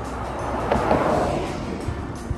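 A car passing close by: its tyre and engine noise swells to a peak about a second in and then fades away, over background music.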